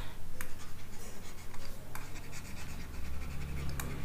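A stylus scratching and tapping on a writing tablet as words are handwritten, over a low steady hum.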